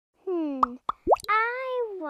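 Cartoon pop sound effects: three or four quick, short plops about a second in, some rising quickly in pitch, set between stretches of a high, child-like voice.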